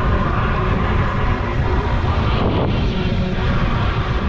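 Wind rushing over the microphone of a camera moving along a paved path, a steady loud rumble with tyre noise on asphalt.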